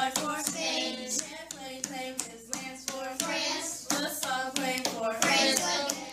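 Children singing a song in a call-and-response style, clapping their hands to the beat.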